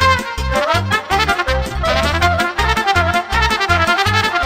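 Moldovan folk dance tune led by a solo trumpet playing a quick, ornamented melody with vibrato, over band accompaniment with a steady bass beat.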